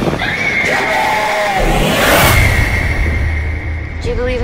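Horror film trailer soundtrack: dark score music with a high sustained tone over a low rumble, and a brief wavering scream about a second in.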